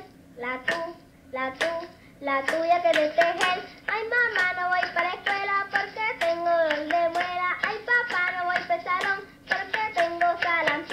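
A voice singing a song in Spanish, with hands clapping along.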